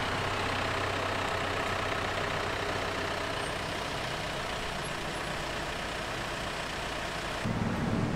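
Steady street traffic noise with a constant low hum. About seven and a half seconds in, a closer engine cuts in, a tuk-tuk's small engine running with a low rumble.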